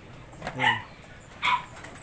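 A single short, sharp animal call about a second and a half in, after a spoken word.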